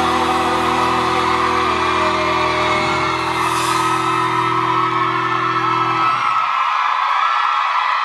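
A live band's final held chord rings out and stops about six seconds in, under a loud crowd screaming and cheering.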